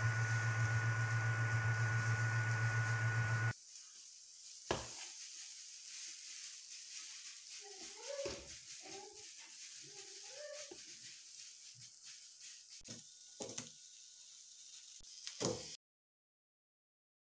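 A steady low hum with a thin high tone that cuts off suddenly after about three and a half seconds, followed by quiet room tone with a few faint clicks and knocks.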